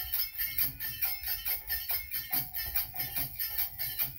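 Instrumental bhajan passage: a harmonium sustaining its reedy tones, a dholak drum underneath, and small brass hand cymbals clashing in a quick even beat of about four strikes a second.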